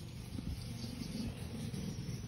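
Quiet outdoor background with faint insect chirping over a low steady rumble.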